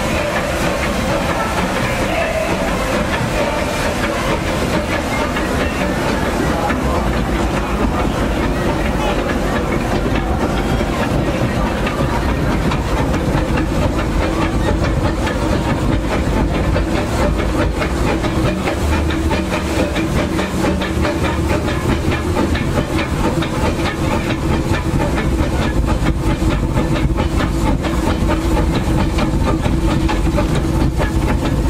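C.K. Holliday 4-4-0 steam locomotive running, heard from its cab: a steady mix of steam hiss and wheel-on-rail clatter. A steady hum comes in about halfway through.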